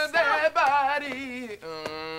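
Drawn-out vocalizing by a person's voice, wavering strongly in pitch for about a second and a half, then one long steady held note near the end.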